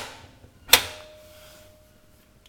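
Front-loading washing machine door being pushed shut and pressed to latch: the dying tail of one hard clunk at the start, a second clunk about three quarters of a second in, then a faint steady tone.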